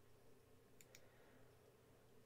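Near silence with two faint computer mouse clicks close together a little under a second in, over a low steady room hum.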